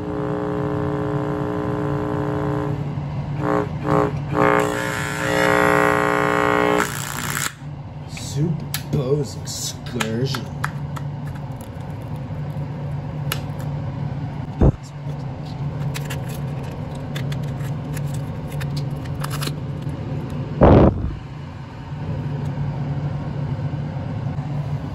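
A small Bose speaker driver being blown: a loud steady buzz with several overtones, turning harsher and louder for its last couple of seconds, then cutting off abruptly about seven seconds in as the driver fails and smokes. Scattered crackles and clicks follow, with a sharp knock around fifteen seconds and a heavy thump about twenty-one seconds in.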